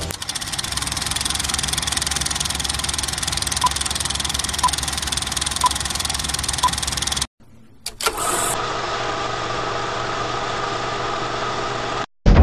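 Film projector running, a fast steady mechanical clatter, with four short beeps about a second apart like a film-leader countdown. After a brief drop-out a steadier hum follows.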